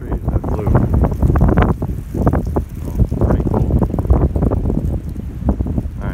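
Wind buffeting the microphone: a loud, uneven rumble that swells and dips in gusts.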